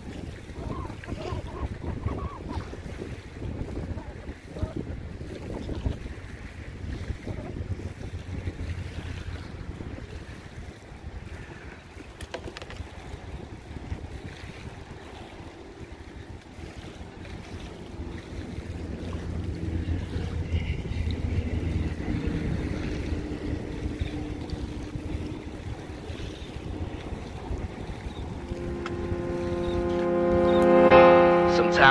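Wind buffeting the microphone, heard as a gusty low rumble throughout. In the second half a low steady hum swells and then fades, and music comes in near the end.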